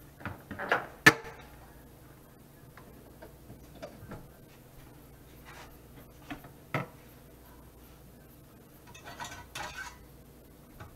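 Clicks and knocks from handling a meat slicer and a meat loaf on a plastic cutting board before the slicer is switched on. A quick run of knocks about a second in ends in a sharp click, the loudest sound here; a single knock follows near seven seconds, and a rustling clatter comes near the end.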